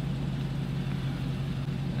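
2023 Dodge Charger Hellcat Widebody's supercharged 6.2-litre V8 idling steadily, a low even hum heard from inside the cabin.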